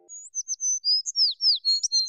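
Bird chirping sound effect: a quick run of short, high tweets, many of them swooping downward, about six or seven a second.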